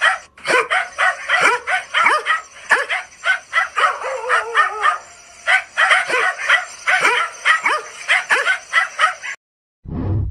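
Dogs barking and yelping in quick succession, several sharp yelps a second, with a wavering whine about four seconds in. The barking cuts off abruptly just before the end.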